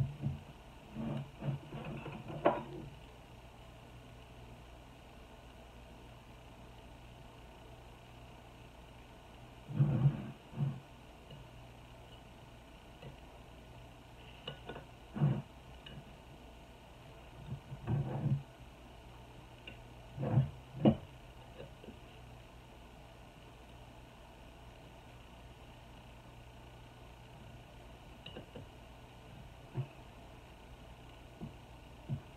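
A butter knife prying and scraping at a canning jar's lid seal, with knocks of the glass jar being handled on a wooden table, in short scattered clusters between long quiet stretches with a low steady hum.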